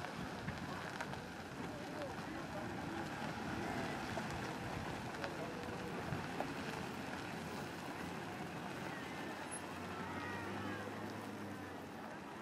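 Wind buffeting the microphone over the steady running of a slow-moving parade vehicle, with faint scattered voices of onlookers; a low engine hum grows stronger toward the end as a float trailer passes close by.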